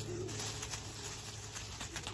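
A dog's paws rustling and scuffing through dry fallen leaves as it runs, over a steady low hum. A low, wavering cooing bird call is heard near the start.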